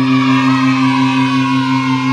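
Electric guitar played through effects: a held low note rings steadily while a higher, wavering tone slides slowly downward over it.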